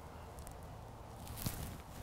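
A short pitch shot with a golf iron: one short, crisp click of the clubface striking the ball off the grass about one and a half seconds in, against faint outdoor ambience.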